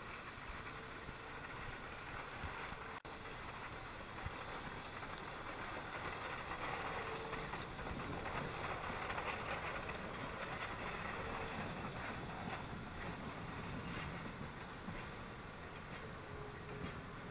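Shay geared steam locomotive working past at close range, its engine and running gear clattering. It is followed near the end by loaded log flatcars rolling by, their wheels clicking over the rail joints.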